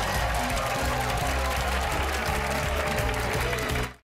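Upbeat show theme music with a moving bass line over studio audience applause and cheering, cutting off abruptly near the end.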